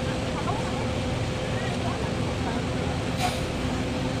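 Steady low hum of a docked ro-ro ferry's engines and machinery, with faint distant voices and a brief hiss about three seconds in.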